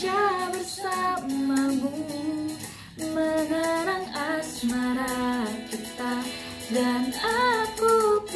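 A young woman singing solo, holding long notes that slide between pitches, with a brief breath break about three seconds in.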